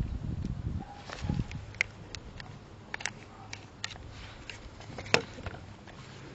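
Small plastic clicks and handling noise as a NiCad battery is fitted back into a cordless phone handset: a low rustle at first, then a scatter of sharp small clicks, the loudest about five seconds in.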